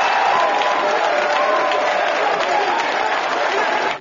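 A large audience applauding steadily, with some voices mixed into the clapping.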